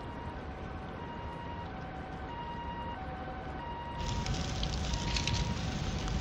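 A two-tone hi-lo siren, alternating evenly between a higher and a lower note about every two-thirds of a second, over a low rumble. About four seconds in, the crackling rush of a fire joins it and becomes the louder sound.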